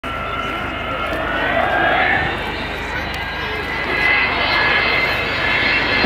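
Avro Vulcan XH558's four Rolls-Royce Olympus turbojets during a flypast: a loud, steady jet roar with several high whining tones that drift slowly upward in pitch.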